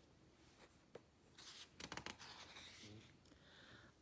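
Faint rustle of a paper picture-book page being turned by hand.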